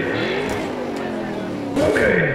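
Dubbed race-car engine sound effect, revving with its pitch sliding up and down, and a louder change near the end.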